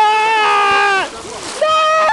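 Two high-pitched, held vocal cries from a rafter in rapids: the first lasts about a second at a steady pitch, the second starts about one and a half seconds in, a little lower. Splashing, rushing whitewater runs underneath.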